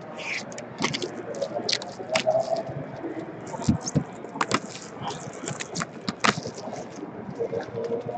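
Clear plastic bag crinkling and a stack of card envelopes rustling as they are handled, in irregular sharp crackles and clicks.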